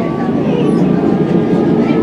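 MI84 RER A electric train running, heard from inside a passenger car: a steady, loud rumble of wheels and running gear with a faint thin whine above it.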